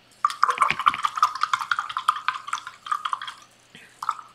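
Paintbrush swished and rattled in a cup of rinse water: a fast run of sharp clicks and splashes lasting about three seconds, the brush knocking against the cup as it is cleaned.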